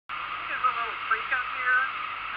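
A voice talking, over the steady wind and road noise of a motorcycle riding along.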